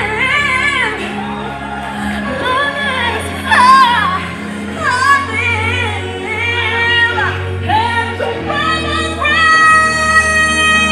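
A woman singing a gospel song live into a microphone, her voice sliding and bending through ornamented runs, over backing music with sustained low bass notes and chords that change every few seconds.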